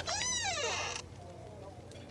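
A short animal-like cry, a little under a second long, rising then falling in pitch, followed by a faint low background.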